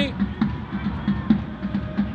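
A drum beaten by supporters in the stands, in a quick steady beat of about five strokes a second.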